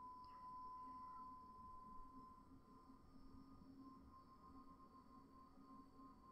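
Near silence: faint room tone with a steady high-pitched hum.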